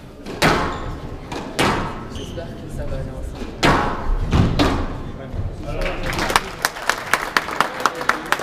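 Squash ball struck by rackets and hitting the court walls in a rally, four loud hits spread over the first half, each ringing in the large hall. Near the end a run of quick sharp claps follows as the rally ends.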